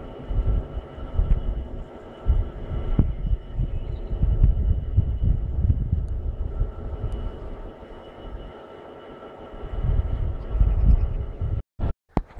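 Irregular low rumbling gusts of wind on the microphone over a faint steady hum from a distant diesel locomotive. The sound cuts out briefly near the end.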